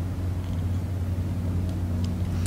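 Steady low hum with several fainter, evenly spaced overtones above it, unchanging in a pause between spoken phrases.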